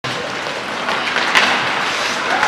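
Ice hockey game in play: a steady hiss of skates and sticks on the ice and the arena around them, with a sharp knock about one and a half seconds in.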